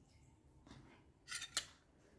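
Fingertips rubbing a face pack over the skin in soft, faint strokes. About a second and a half in come two short, sharp, scratchy sounds close together.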